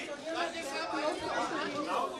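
Many overlapping voices of a press room crowd chattering and calling out at once, still unsettled after repeated calls for quiet.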